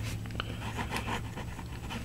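Fountain pen with a 1.1 mm stub nib scratching faintly across paper as cursive words are written, over a steady low hum.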